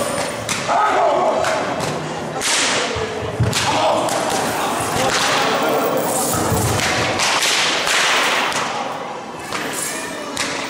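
Whips lashing and striking, a string of sharp cracks and thuds at irregular intervals, as performers are flogged in a staged scourging.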